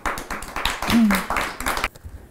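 A small group clapping, with laughter mixed in and a short vocal sound about halfway through.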